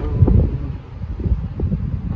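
Wind buffeting the microphone: a low, uneven rumble that swells and dips, strongest in the first half second.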